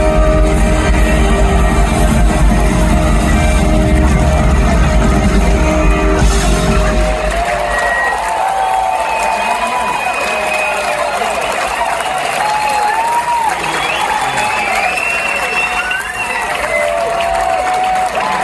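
A live band's held final chord of electric and acoustic guitars, bass and drums, ending about seven seconds in. The audience then cheers, whoops and whistles over applause.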